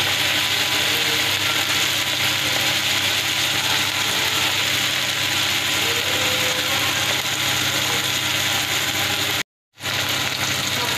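Sliced onions and tomatoes sizzling steadily in hot oil in a metal kadai. The sound drops out briefly near the end.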